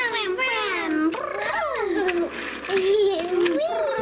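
A high-pitched voice imitating car engines, a 'brum' hum that glides up and down in pitch without words, with a few light clicks of plastic toy cars on a wooden floor.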